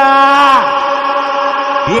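A drawn-out chanted vocal note from a funk DJ's recorded vocal tag, held on one pitch, bending briefly about half a second in, then continuing as a steady sustained tone.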